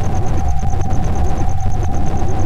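Unnerving droning background music from a horror short film: a loud low rumble under a steady mid-pitched hum, with a high tone pulsing rapidly, about eight times a second.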